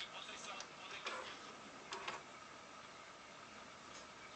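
Bang & Olufsen Beosound 9000 CD changer's carriage mechanism driving the lit disc clamp along its row of discs to the next position, heard faintly with a few short clicks in the first two seconds.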